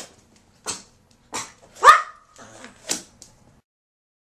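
Toy poodles yipping and barking in excitement: a run of short, sharp yips about every half second, the loudest just before two seconds in. The sound cuts off shortly before the end.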